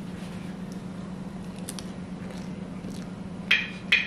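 A person biting into and chewing a slice of pizza: faint mouth and chewing sounds over a steady low hum, with two short sharp sounds near the end.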